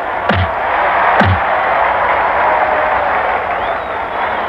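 Two punch sound effects, each a sharp hit that drops steeply in pitch, near the start and about a second later, over a continuous loud noisy roar.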